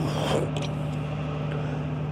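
Steady low machine hum with one constant pitch, and a brief rustle or scrape at the start.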